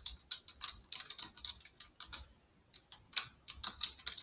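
Typing on a computer keyboard: a quick run of key clicks, with a short pause a little past halfway before the typing resumes.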